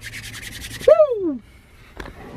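Hands rubbed together briskly for just under a second, a quick run of dry skin-on-skin scrapes, followed by a man's single falling "Woo!".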